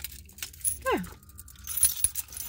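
A bunch of car keys jangling and clinking in the hand, with a sharp clink near the end. A short whine falls steeply in pitch about a second in.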